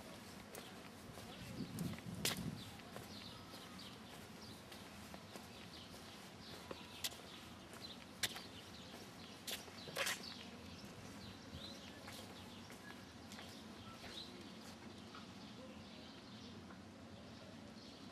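Faint outdoor street ambience with scattered short bird chirps and several sharp clicks in the first half.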